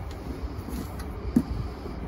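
Steady outdoor background with wind on the microphone, and a single soft knock about one and a half seconds in as a removable rear boat seat is handled and set back into place.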